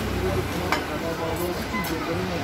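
Voices of people talking nearby, with a sharp clink about three-quarters of a second in.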